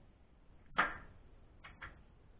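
A stretched rubber band snapping once, sharp and sudden about a second in, followed by two lighter snaps or clicks close together near the end.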